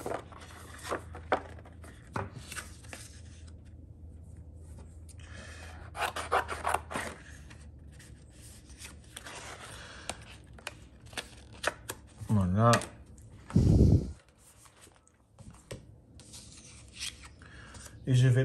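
Small craft scissors snipping through a sheet of patterned scrapbook paper in a run of short cuts, with the paper rustling and sliding on the cutting mat. A brief voice sound comes about two-thirds of the way through.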